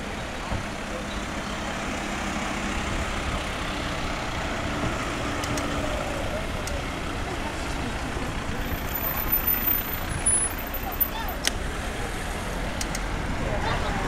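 Street traffic: cars driving slowly past with engines running over a steady road noise, with voices of people on the pavement in the background.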